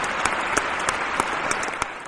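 Recorded audience applause: many hands clapping steadily, with single louder claps standing out from the crowd.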